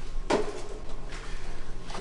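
Kitchen handling noise: a sharp knock about a third of a second in, then a fainter one about a second later.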